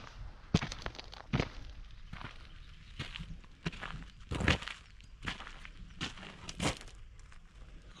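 Footsteps through dry grass down a riverbank, irregular steps with a few louder ones about four and a half and nearly seven seconds in.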